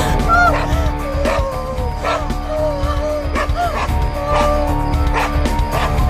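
Tense drama score: a low sustained drone with soft beats a little more than once a second, overlaid by many short, high whimpering cries that rise and fall in pitch.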